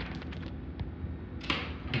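Bonsai concave cutters working on a green bamboo pole: a few small clicks, then one sharp snip about three-quarters of the way through as a branch stub is cut off.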